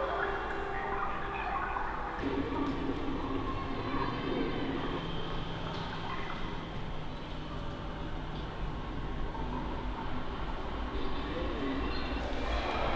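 Steady low rumble and hum of a large building interior, with faint shifting tones above it.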